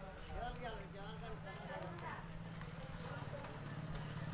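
Indistinct chatter of several people talking in the background, over a steady low hum.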